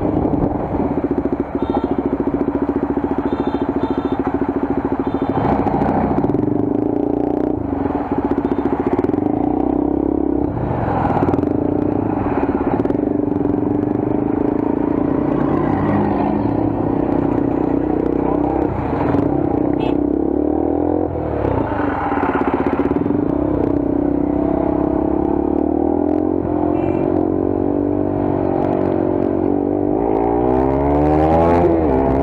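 Motorcycle engine running steadily under way, heard from the rider's own bike with wind and the noise of surrounding traffic; in the second half its note wavers up and down as the bike eases and picks up speed.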